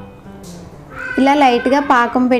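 Faint background music, then a woman's voice starting about a second in.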